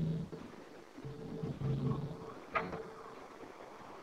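A low voice making short humming sounds in the first half, then a single click about two and a half seconds in.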